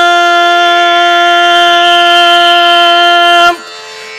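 A woman's singing voice holding one long steady note at the end of a line of a Carnatic-style bhajan. The note stops about three and a half seconds in, leaving only a faint steady tone.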